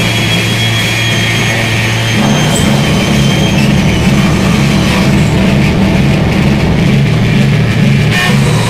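Live rock band playing loud, droning music: a held low note, then about two seconds in a pulsing low riff, with thin high tones ringing above it in the first half.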